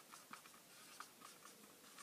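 Near silence: faint room tone with a few soft, scattered ticks.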